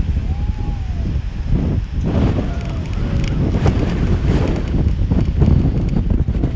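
Wind buffeting the microphone in a loud, uneven low rumble, with a faint voice briefly in the first second and a few light clicks.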